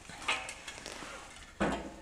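Handling noise from an old, rusty steel tractor mudguard being moved on a concrete floor. A faint scrape comes first, then a sudden, louder knock or scrape about one and a half seconds in.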